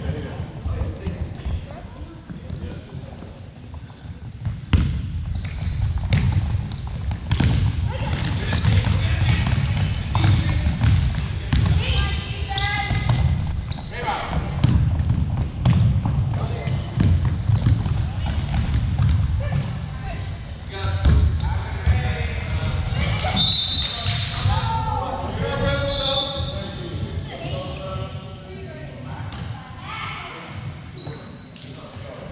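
Basketball game sounds in a gym with a hardwood floor: a ball bouncing, many short, high sneaker squeaks, and the voices of players and spectators ringing in the large hall.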